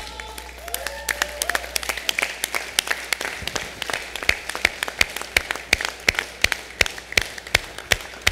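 Crowd applauding, with loud, distinct hand claps close to the microphone standing out over it at about three a second.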